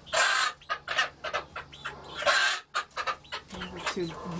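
Young chickens squabbling on the roost, with squawks and clucks and two loud bursts of wing-flapping, one right at the start and one a little past halfway. It is a scuffle over the best roosting spot, taken for young roosters fighting.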